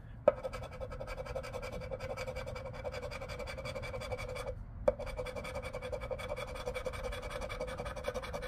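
Round scratcher tool scraping the latex coating off a scratch-off lottery ticket in a steady rasp, with a short pause a little past halfway and a light tap as the scraping starts again.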